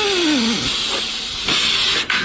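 Pneumatic steel-strapping tool tensioning a steel strap: its air-motor whine drops steeply in pitch and stalls as the strap comes up to tension, then gives way to a hiss of exhausting air, with a louder burst of air about one and a half seconds in.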